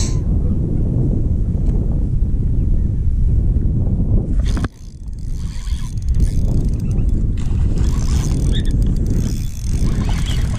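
Wind buffeting the microphone in a steady low rumble that dips briefly about halfway through, with faint clicks from a spinning reel being cranked.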